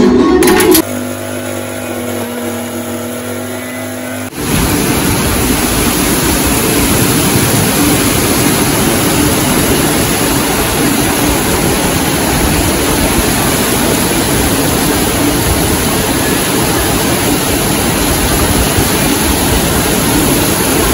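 Heavy rain pouring down steadily, a dense even hiss that comes in abruptly about four seconds in and holds steady. Before it there is music and then a quieter stretch with a low steady hum.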